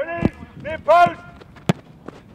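Footballers shouting short calls during a training game, then a single sharp thud of a football being struck near the end.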